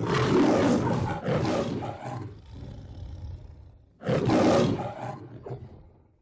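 The MGM logo's lion roar: a long, growling roar that trails off after about two seconds, then a second, shorter roar about four seconds in that fades out near the end.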